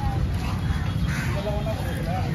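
Fish-market din: crows cawing and people talking in the background over a steady low rumble.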